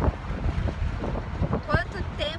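Wind buffeting the microphone in an open-top convertible at highway speed, a dense low rumble of wind and road noise with irregular gusts.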